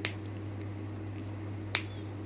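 Two sharp clicks, one at the start and a louder one near the end, over a steady low hum and a faint high whine.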